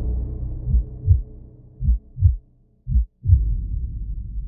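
Heartbeat sound effect in a soundtrack: a low double thump, lub-dub, three times about a second apart, over the fading tail of the music. The tail drops out briefly just before the last beat.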